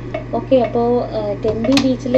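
A woman talking to the camera in a language the recogniser did not transcribe, over a steady low hum, with one sharp click about three quarters of the way through.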